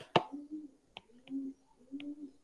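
A few faint, sharp clicks at irregular intervals: a stylus tapping on a tablet's glass screen during handwriting.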